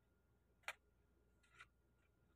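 Near silence broken by two faint, short clicks about a second apart, from parathas being shifted by hand on a sheet of brown paper.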